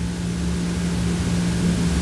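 Steady low hum with an even hiss of background noise, with no speech over it.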